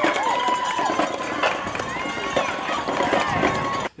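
Outdoor street-race sound: runners' footsteps on the road and spectators shouting and cheering, with a high steady tone held through much of it. It starts and stops abruptly.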